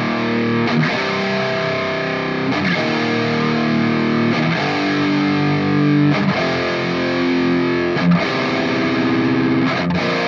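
Electric guitar played through a Revv G3 distortion pedal into a Nux Solid Studio power-amp and cabinet-IR simulator. It plays heavily distorted sustained chords, striking a new chord about every two seconds and letting each one ring.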